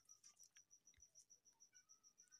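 Near silence, with a faint, rapid, even chirping of an insect, about seven pulses a second.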